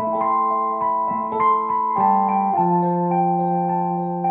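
Roland FP-30X digital piano played with an electric piano voice: sustained chords with a bell-like tone, moving to new chords about halfway through.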